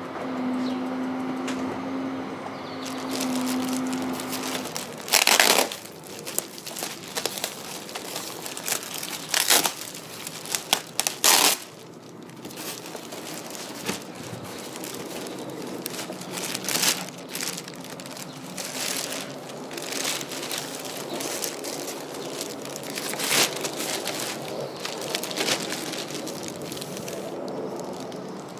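Plastic bags and foam wrapping sheets crinkling and rustling as they are handled and pulled out of a packing box, with several sharp, louder crackles.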